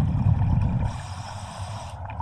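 Scuba breathing heard underwater: a low bubbling rumble of exhaled air first, then the hiss of an inhale through the regulator from about a second in.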